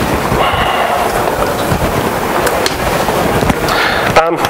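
Loud, steady crackling and rumbling microphone noise with scattered clicks, and no speech over it.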